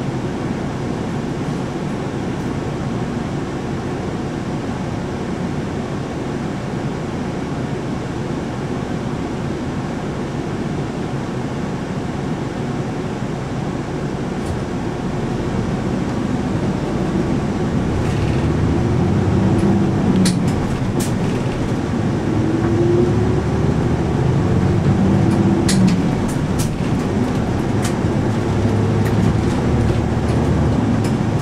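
Route bus engine heard from inside the cabin, running steadily at idle, then revving with rising pitch as the bus pulls away about two-thirds of the way through. A few short sharp clicks are heard over the engine during the drive-off.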